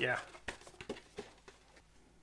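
A man says "yeah", then a few faint, light clicks and taps as the helmet is handled.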